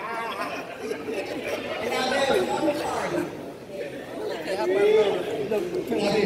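Crowd chatter: many guests talking at once in overlapping conversation, with no single voice standing out.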